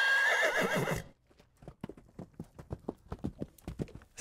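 A horse whinnies for about a second, a wavering high call, then its hooves clip-clop in quick, even beats, about four or five a second, growing louder toward the end.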